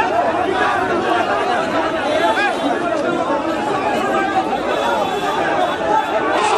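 A crowd of many voices shouting and clamouring over one another during a brawl between two factions at a political meeting.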